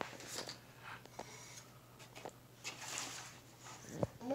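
Faint rustling and small clicks of toys being handled: a child's hand rummaging among toy gold coins and paper play money in a wooden treasure chest.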